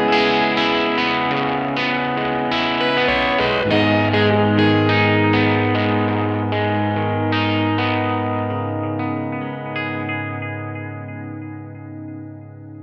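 Instrumental music: repeated plucked notes through effects, about two a second, over a sustained low tone, growing quieter in the last few seconds.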